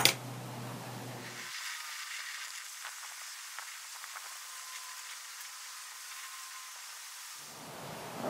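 Gas torch lit with a sharp pop, then its flame hissing steadily, with a few faint ticks, before the hiss dies away near the end.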